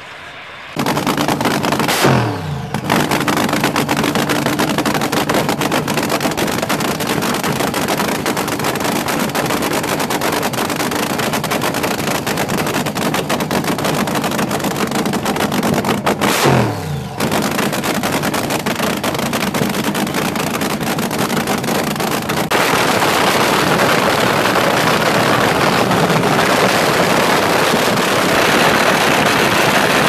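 Supercharged dragster engine running loud and rough, its pitch dropping quickly after a rev about two seconds in and again about halfway through. It grows louder about two-thirds of the way through.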